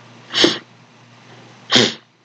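A man sneezing twice, two short sharp sneezes about a second and a half apart.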